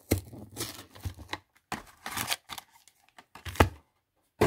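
Foil trading-card packs being taken out of a cardboard hobby box: wrappers crinkling and rustling in short bursts, with the cardboard handled. The loudest crackle comes about three and a half seconds in.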